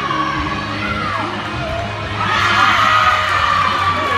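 Background music with crowd noise and cheering in a large, echoing gym, getting louder in the second half.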